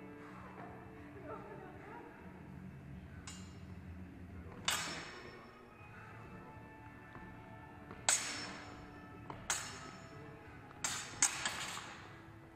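Steel practice longswords clashing blade on blade: scattered sharp strikes that each ring briefly, the loudest about five and eight seconds in, then a quick flurry of several clashes near the end.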